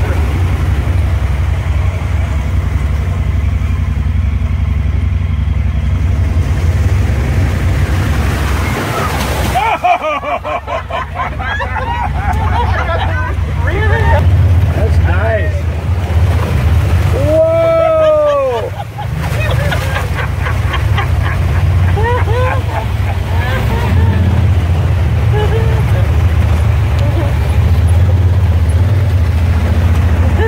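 Honda Pioneer 1000 side-by-side running steadily with a low engine rumble as it drives through a creek, with water splashing around the wheels. Short voice-like calls come and go over it, including one long rising-and-falling whoop a little past halfway.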